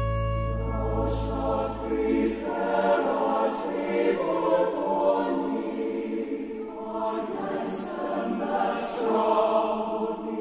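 A choir singing, entering about half a second in over a held instrumental chord whose low notes fade out over the first two seconds.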